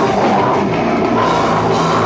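Heavy rock band playing loud and live, with a drum kit and cymbals driving a dense, unbroken wall of sound.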